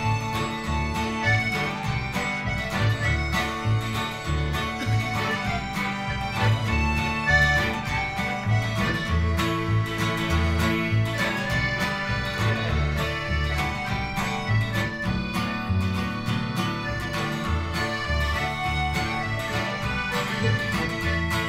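A live string band playing an instrumental break with no singing: guitar and other plucked strings over a bass line with a steady beat.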